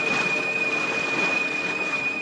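Water churning and thrashing in a pool as piranhas feed, a dense rushing noise with a steady high-pitched tone held above it.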